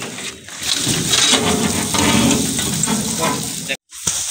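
Dry wheat straw rustling and a thresher's straw-clogged metal mesh sieve scraping as it is pulled out of the machine, with indistinct voices.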